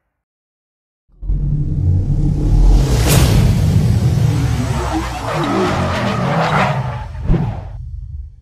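Car-themed logo intro sound effects over music: a loud whoosh with a rumbling car-engine and tyre-screech effect. It starts suddenly about a second in and ends with a final hit near the end.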